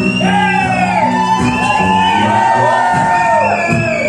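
Two acoustic guitars strummed in a live folk song, with a high wordless vocal line over them that slides up and down and holds one long note in the middle.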